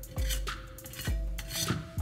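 Metal scraper blade scraping softened, flaking carbon gunk off a cast iron skillet in a stainless steel sink, in a few short strokes with light knocks of metal on the pan. The crud has been loosened by days in an electrolysis tank.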